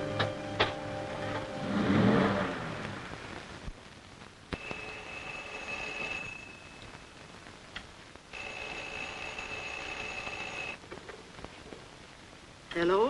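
A film-score music cue swells and ends in the first few seconds. A telephone bell then rings twice, each ring lasting about two seconds with a pause of about two seconds between them.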